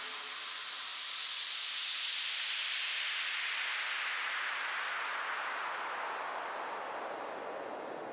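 A white-noise sweep, the downlifter effect that ends an electronic dance track, falling slowly in pitch and fading, with no beat or melody under it.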